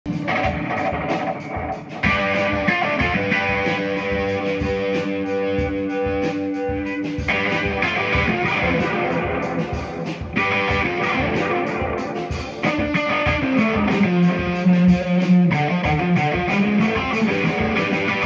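Electric guitar playing a rock riff over a steady drum beat. Near the end a low note is held for a couple of seconds before it slides.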